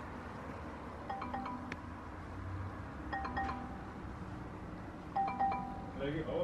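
Soft electronic chime notes in short groups of two or three, about two seconds apart, over a low steady hum.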